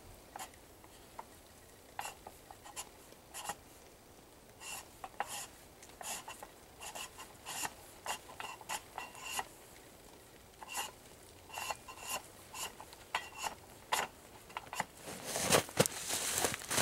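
Braided steel locking cable scraping and ticking against a metal camera lockbox as it is fed through the box's holes: irregular short rasps, with a louder, longer scrape near the end.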